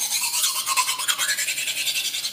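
Kitchen knife being sharpened on a sharpening steel: fast, rhythmic metal-on-metal scraping strokes as the blade is drawn back and forth along the rod.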